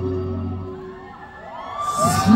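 Live concert music dies away to a quieter pause between phrases. Near the end, a brief burst of audience cheering comes in as the music swells back.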